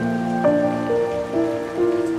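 Slow, melancholic solo piano, a new note or chord struck about every half second, over a steady bed of rain.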